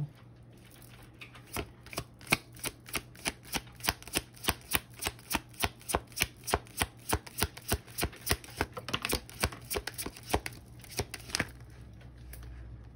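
A deck of large oracle cards being shuffled by hand: a steady run of quick card slaps, about four a second, starting a second or so in.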